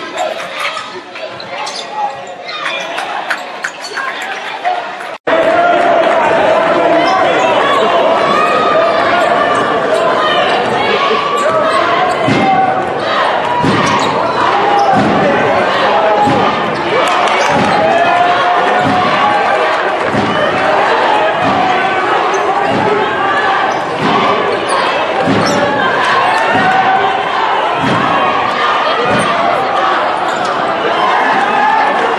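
Basketball being dribbled on a hardwood gym floor, its bounces repeating about once or twice a second, over the steady chatter of a crowd in a gymnasium. About five seconds in there is an abrupt cut, after which the crowd noise is louder.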